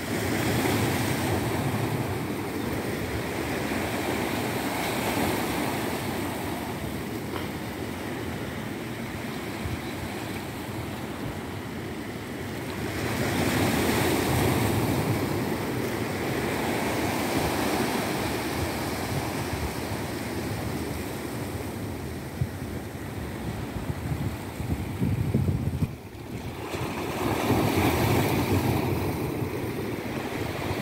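Sea surf washing steadily, with wind rumbling on the microphone. The wash swells louder about halfway through and again near the end.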